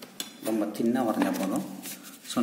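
A clear plastic scale ruler clicking and clattering as it is set down and positioned on a paper drawing sheet, with a man's voice speaking through most of it.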